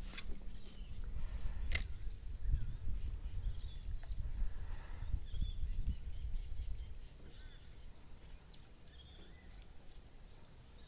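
Low, uneven rumbling handling noise from gear being moved about in a kayak, with one sharp click about two seconds in. It dies down after about seven seconds. Faint short bird chirps come and go behind it.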